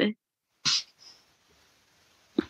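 The end of a spoken word, then a short breathy puff of laughter through the nose or mouth. A fainter puff follows a moment later, over faint hiss from the call line.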